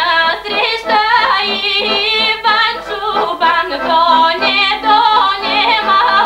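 A woman singing a Bulgarian folk song with accordion accompaniment. Her voice carries a wavering, ornamented melody over the accordion's sustained chords.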